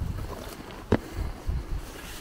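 Wind rumbling on the camera microphone, with a few low thumps of footsteps through long grass and nettles and one sharp click about a second in.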